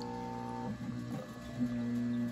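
Wayne WaterBug submersible utility pump running with a steady electric motor hum as it pumps water out of the sink.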